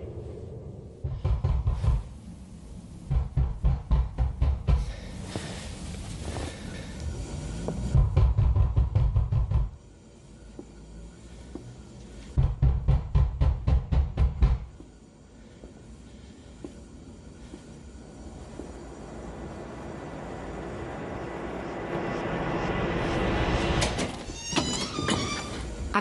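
Rapid knocking on a door in four bouts, each about five knocks a second, over an ominous film score. The score swells steadily in the second half.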